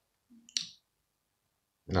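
A man's short low 'mm' and a mouth click about half a second in, otherwise near silence, then his speech begins just before the end.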